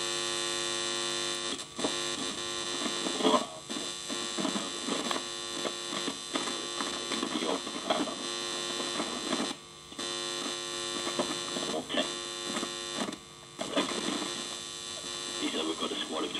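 Homemade foxhole radio played through a guitar amplifier: a steady mains hum and buzz with crackles as the pencil-lead contact is moved over the razor-blade detector, cutting out briefly twice.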